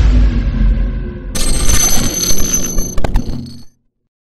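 Produced intro sound effect: a deep boom dying away, then a bright, ringing electronic sting with a couple of sharp glitch clicks, cutting off suddenly near the end.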